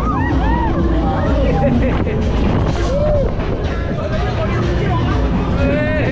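Riders on a KMG Freak Out pendulum ride screaming and whooping in short rising-and-falling yells, over a steady low rush of wind and ride noise.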